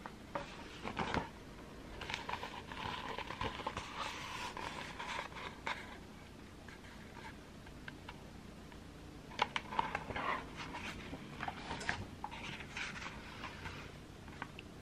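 Hands handling an open picture book held close to the microphone: soft paper rustling and fingers scraping on the pages, with a few small taps about a second in and again near ten seconds.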